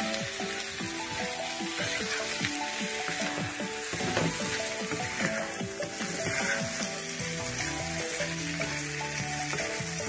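Cubed potatoes and onions sizzling as they fry in oil in a non-stick wok, stirred and scraped with a wooden spatula. Background music with a melody and bass line plays over it.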